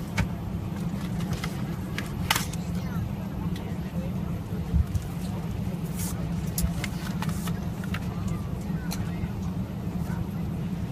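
Steady low drone of an airliner cabin, with scattered sharp clicks and paper rustles as a card is handled.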